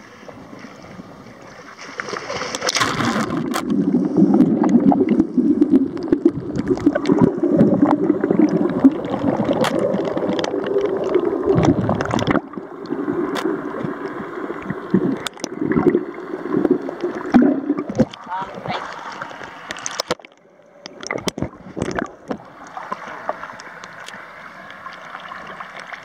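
A camera plunging into the sea with a splash about two seconds in, then muffled underwater bubbling and rushing water with many small clicks and crackles. The sound thins out and gets quieter after about twelve seconds, with water sloshing near the end as the camera breaks the surface.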